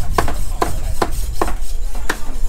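Butcher's cleaver chopping meat on a wooden block in a steady rhythm, about two to three strikes a second, over a low market rumble.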